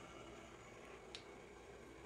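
Very faint hiss of water in a stainless steel pot starting to boil, small bubbles rising from the bottom, with one faint tick about a second in.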